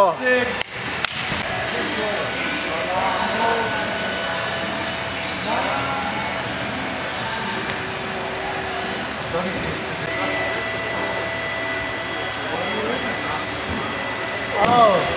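Gym-hall noise with faint, indistinct voices in the background. A few sharp thuds from landings on the mats come about a second in, and a steady hum runs under it all.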